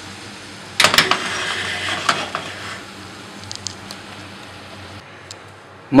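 Beetroot sizzling in oil in a frying pan as the pan is moved off the gas burner, with a few knocks of the pan about a second in and the sizzle fading away over the next few seconds.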